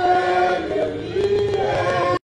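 A small congregation singing a worship song together, several voices holding notes that move in pitch.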